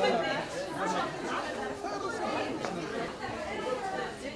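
Indistinct chatter of several overlapping voices: shoppers talking at once, with no single speaker clear.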